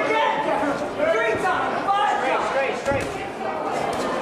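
Several people talking and calling out at once, with a few short knocks among the voices.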